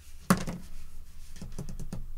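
A plastic Hasbro Marvel Legends Chamber action figure toppling over onto the tabletop: one sharp clack about a third of a second in, then a few lighter taps near the end. It falls because, with its knees bent, its ankles cannot tilt forward far enough to keep it standing.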